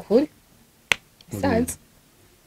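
Brief snatches of speech with a single sharp click about a second in.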